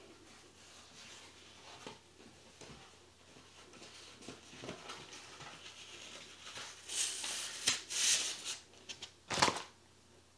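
Nylon tights rustling softly as they are handled and gathered up, with three louder swishes of fabric near the end.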